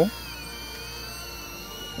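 DJI Avata FPV drone's propellers whining in flight, a thin high whine that drifts slowly in pitch.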